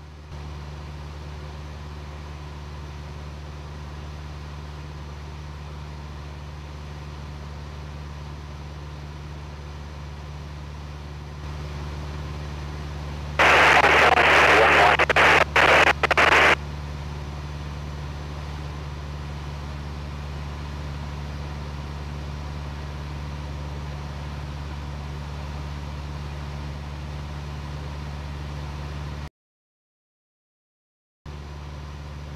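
Light aircraft piston engine of a Jodel DR1050 droning steadily in cruise, heard from the cockpit, growing slightly louder about eleven seconds in. About thirteen seconds in, a loud, broken burst of crackly noise lasts some three seconds. The sound cuts off just before the end.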